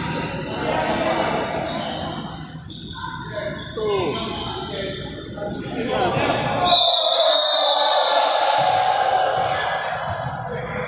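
A ball bouncing on a wooden sports-hall floor during a tchoukball game, with voices calling out and echoing in the large hall.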